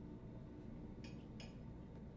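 Two light metallic clinks about half a second apart, from an Allen key on the steel adapter-plate screws of the agitator motor mount, over a faint steady low hum.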